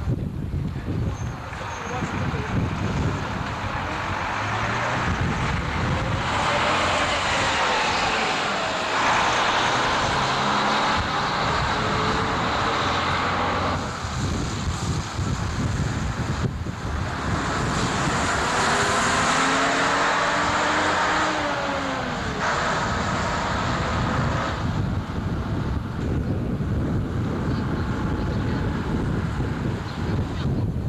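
Diesel bus engines pulling away through a bus station, climbing and dropping in pitch as they accelerate and change gear, in two louder surges about six and seventeen seconds in, over a steady traffic rumble.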